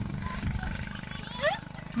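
Wind rumbling steadily on a handheld phone's microphone.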